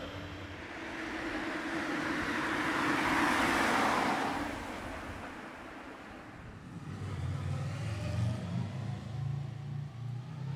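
A car driving past on the road: its tyre and engine noise swells to its loudest about three to four seconds in and fades away. From about seven seconds a lower, uneven engine sound from another vehicle comes in.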